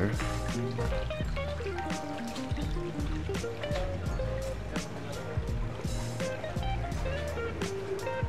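Background music: a melody of short stepped notes over a sustained bass and a steady beat.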